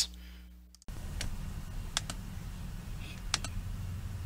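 A handful of separate, sharp clicks from a computer mouse or keyboard, over a steady low hum that starts abruptly about a second in.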